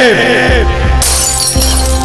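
A glass-shattering sound effect crashes in about a second in, over loud dramatic background music.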